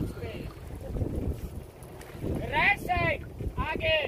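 Wind buffeting the microphone and a low rumble on a moving open boat. A voice rises and falls twice in the second half.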